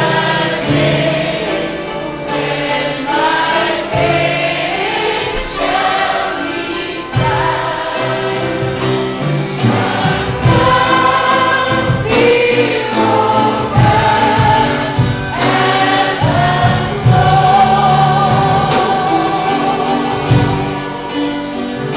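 A woman singing a slow gospel hymn into a microphone, with live band accompaniment including drums.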